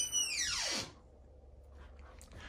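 A wooden closet door's hinge creaking as the door swings open: one squeal that climbs, then slides steadily down in pitch over about a second and stops, followed by faint room tone.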